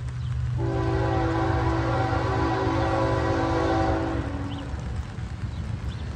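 Approaching locomotive's multi-note air horn sounding one long blast, a steady chord of several notes lasting about four seconds, over a low steady rumble.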